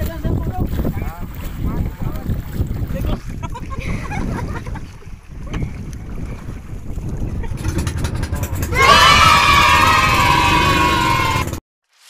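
Wind buffeting the microphone with a low, uneven rumble. Near the end a person lets out one long, loud, high-pitched shout held for nearly three seconds, the loudest sound here, before the sound cuts off abruptly.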